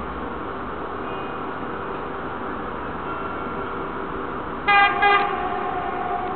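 Approaching Vossloh G2000 diesel-hydraulic locomotive with a steady rumble, sounding two short horn blasts close together near the end.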